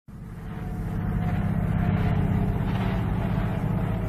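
A vehicle engine running steadily at a low, even pitch, fading in over the first second.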